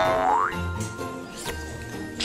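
Cartoon background music with a rising sound effect at the start, a quick glide up in pitch lasting about half a second, followed by a couple of faint whooshes.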